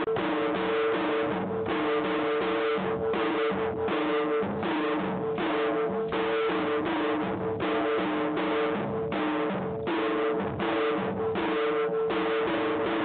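Folk dance music with a steady, even drum beat and a plucked or strummed string part over a held note; it runs on unbroken through a cut in the picture.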